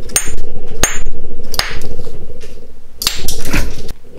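Hammerstone striking the edge of a stone core in hard-hammer percussion flaking: four sharp strikes spaced unevenly, the first two with a short, high, clinking ring, knocking large flakes off the core.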